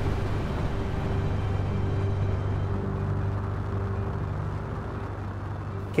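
Rocket lifting off: a steady deep roar with a low hum in it, slowly fading toward the end.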